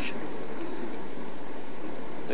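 Steady, even hiss of room noise in a large hall, with a short click right at the start.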